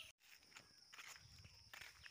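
Faint footsteps on a dirt path, soft steps roughly every half second.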